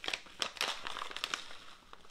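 Crinkling and crackling of a small plastic food packet as it is handled and pulled open, in irregular sharp crackles.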